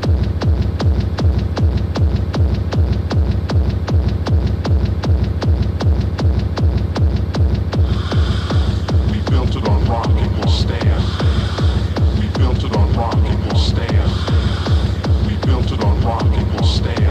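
Techno DJ mix: a steady, fast kick-drum beat with a heavy bass. About halfway through, a repeating high synth riff joins in.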